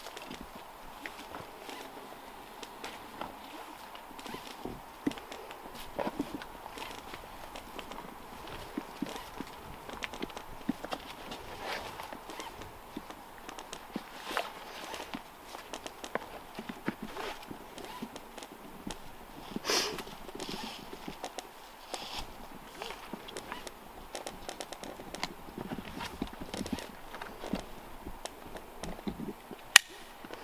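Climbing rope and hardware clicking and knocking irregularly as a climber pulls himself up a doubled rope (DRT) into a tree, with a louder knock about twenty seconds in and a sharp crack near the end.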